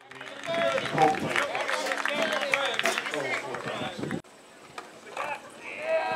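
Several voices of football players and coaches shouting and calling over one another on the field. The sound drops off abruptly about four seconds in, leaving a few quieter, scattered calls.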